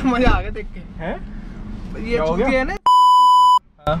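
A steady, high-pitched electronic beep lasting about three-quarters of a second near the end, dropped in over the talk with the rest of the sound muted around it: a censor bleep added in editing.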